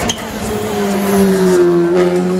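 Rally car engine passing close by, its note falling steadily for over a second and then holding level as the car goes into the bend.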